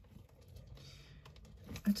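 Faint handling noise of costume jewelry: a few small clicks and a brief rustle as a piece is turned over and checked for a maker's mark.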